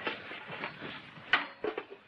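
A sharp clink about a second in, then a few lighter clinks, as small metal pots and cups are handled on a breakfast tray, over the hiss of an old film soundtrack.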